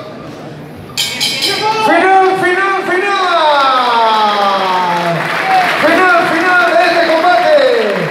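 Loud, drawn-out shouting close to the microphone, breaking in suddenly about a second in with long calls that slide down in pitch, over the noise of a boxing crowd.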